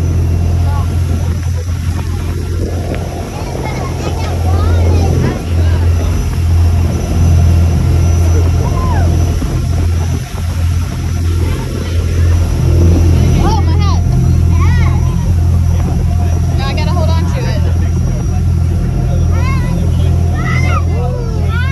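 Boat engine running steadily with a low drone as the boat moves under way, over the rush of wind and water.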